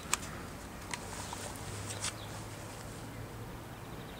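Footsteps of a person walking, heard as a few sharp ticks about a second apart over a steady low hum.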